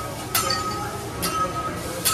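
Hibachi chef's metal spatula and knife clinking on the teppanyaki griddle: two sharp metal clinks, each ringing on briefly. A low hubbub of restaurant chatter runs underneath.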